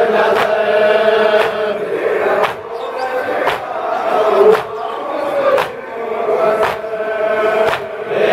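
A group of men chanting a noha, the Shia mourning lament, in unison, with a sharp slap about once a second from chest-beating (matam) in time with the chant.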